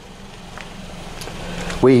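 A faint steady low hum with background noise that grows gradually louder, like a vehicle drawing near, before a word of speech near the end.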